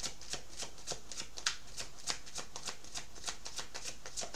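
A tarot deck being shuffled by hand: a quick, irregular patter of soft card clicks and flicks, several a second.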